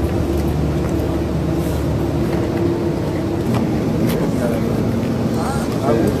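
An engine running steadily with a low hum, its tone shifting about halfway through.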